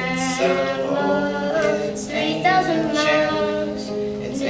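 Singing over a strummed acoustic guitar, a live folk song.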